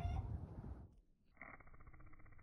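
Dung beetle's wings buzzing as it takes off, a steady, finely pulsing drone that starts about one and a half seconds in.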